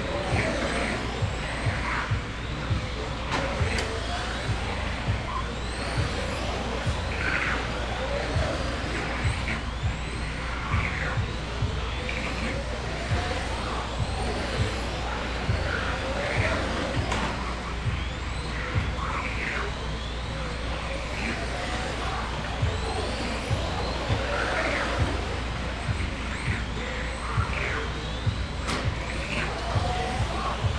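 Several electric radio-controlled touring cars racing on an indoor track: the motors give short rising whines, one or two a second, as the cars accelerate out of the corners. Occasional light clicks and a steady low hum sit beneath them.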